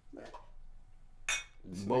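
Drinks knocked together in a toast: a glass beer bottle tapped against a cup, with one sharp clink about a second and a half in.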